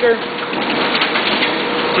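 Duplo 4000 twin-tower collator and booklet maker running, a steady, dense mechanical whir as a set of collated sheets is fed through into the booklet maker. A faint steady hum joins about halfway through.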